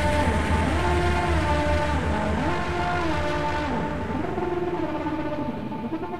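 Psytrance electronic music in a beatless passage: a held synth tone and slow up-and-down gliding synth lines over a droning bass. The treble is filtered away about two-thirds of the way through.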